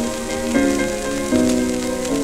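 A shellac 78 rpm record playing on a Goldring Lenco GL75 turntable: instrumental music of held notes that change every half second or so, over steady surface hiss and crackle from the shellac.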